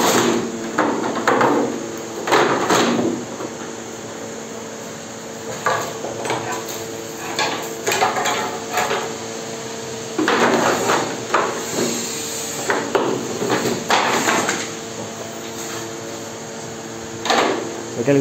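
Irregular knocking and clattering as a molded plastic side skirt is handled and seated in a metal cutting jig and its clamps and cutting tool are fitted, in several bursts, over a steady low hum.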